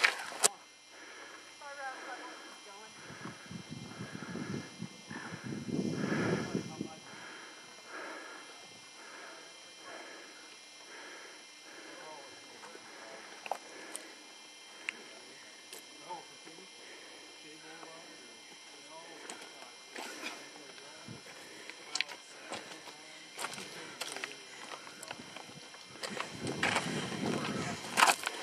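Footsteps crunching on a rocky, gravelly trail at a steady walking pace, about three steps every two seconds, with scattered clicks of loose stones and faint voices.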